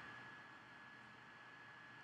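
Near silence: a faint steady hiss of room tone, with a thin steady high-pitched tone under it.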